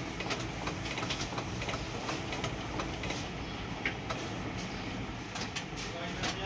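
Epson L8050 six-colour inkjet printer printing a photo: the print-head carriage shuttles back and forth over a steady motor hum, with frequent short clicks.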